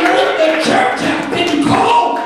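A man's voice singing, or chanting in a sung, musical way, through a hand-held microphone.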